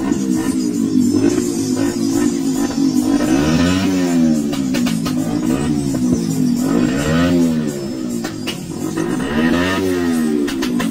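Music with a motorcycle engine revving beneath it, the engine's pitch rising and falling in a few waves.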